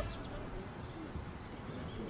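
Open-air field ambience with faint, scattered distant calls from rugby players around a scrum.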